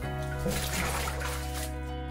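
Background music with sustained held notes, over faint splashing of water in a bathtub that fades out near the end.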